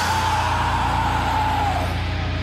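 A break in the drumming where only the song's backing track sounds: a single pitched tone slides up, holds high and sags slightly near the end, over a steady low bass drone.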